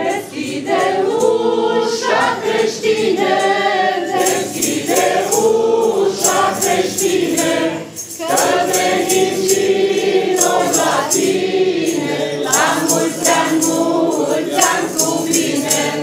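Mixed choir of men and women singing a Romanian Christmas carol (colind), in two long phrases with a brief break in the middle. From about four seconds in, a steady jingling beat of shaken percussion keeps time with the singing.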